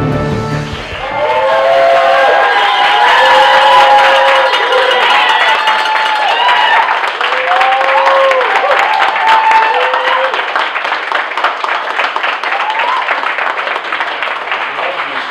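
A studio audience clapping and cheering, with short whoops over dense applause. A theme-music sting cuts off just at the start. The whoops die away after about ten seconds while the clapping carries on more thinly.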